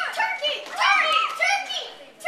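Children's voices: several loud, high-pitched shouts and calls with no clear words, the loudest in the middle.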